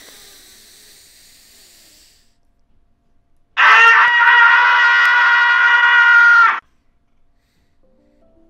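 A man's loud, long held scream of anguish into a close microphone, about three seconds at a steady high pitch, starting about three and a half seconds in and cutting off abruptly.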